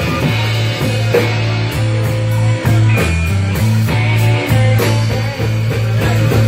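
Live rock band playing: electric guitar over held bass notes and a drum kit, with a regular beat.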